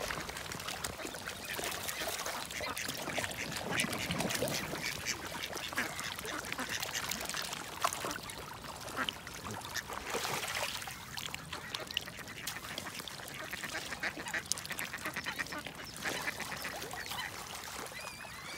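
Mallards and swan cygnets feeding together in shallow water: a busy, steady clatter of bills dabbling and splashing, with a quack now and then.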